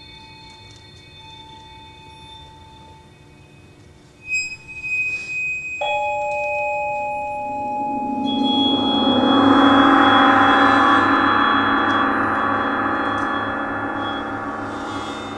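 A percussion quartet playing slow, ringing music. Soft held tones fade, a few struck notes sound about four seconds in, then sustained tones enter and swell into a dense, loud ringing that peaks about two-thirds of the way through before easing slightly.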